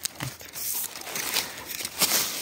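Dry, chopped corn stalk pieces rustling and crackling in a hand, in a few short bursts.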